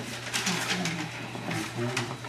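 Low, muffled voices murmuring, with paper rustling and shuffling over a steady electrical hum.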